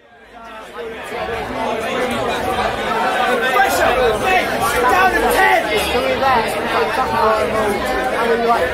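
A group of voices talking and shouting over one another, fading in over the first second or so.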